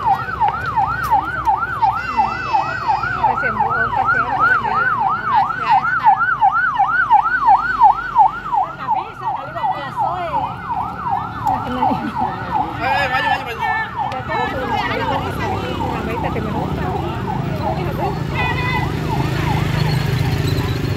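Ambulance siren in fast yelp mode, sweeping up and down about three times a second. It is loudest a little past the middle, then fades away as it goes by.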